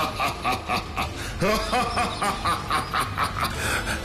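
A male demon's menacing laugh: a long run of rapid 'ha-ha' bursts, about four a second, rising and falling in pitch.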